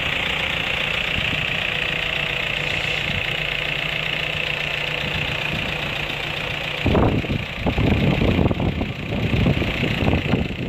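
VW Amarok pickup's engine idling steadily. From about seven seconds in, an irregular, gusty rumble covers it.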